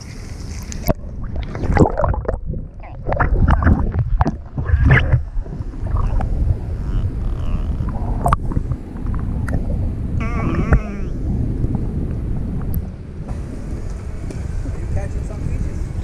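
Water sloshing and splashing against a waterproof action camera held right at the waterline, as a rough, choppy run of splashes over the first five seconds or so, then a steadier low wash of water on the microphone. A short voice-like call is heard briefly about ten seconds in.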